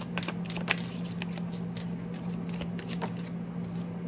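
A small deck of angel-number oracle cards being shuffled and handled in the hands: a quick run of card clicks and slaps in the first second, then a few scattered ones. A steady low hum runs underneath.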